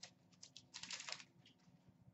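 Faint flicking and rustling of Upper Deck SP Authentic hockey cards being sorted through by hand: a light tick at the start and a short cluster of soft clicks about a second in.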